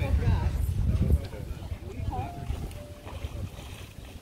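Low rumbling wind noise on a phone microphone, strongest for about the first second and then dying down, with faint voices of people in the distance.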